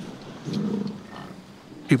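American bison giving a low, rough grunt about half a second in.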